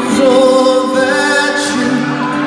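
Live pop ballad sung by a male vocal group, the lead voice holding long notes over band accompaniment, recorded from the audience in an arena.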